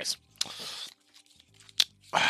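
Foil Pokémon booster pack wrapper crinkling briefly as it is handled, then a single sharp click near the end.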